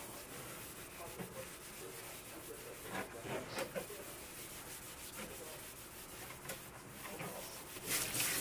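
A cloth rubbing and scrubbing over the hard rind of a whole watermelon, with a few louder strokes in the middle. Tap water starts running onto the melon at the very end.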